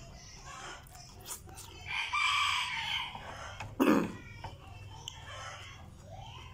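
A rooster crowing, one call of about a second near the middle, followed shortly after by a brief, louder sound that falls in pitch.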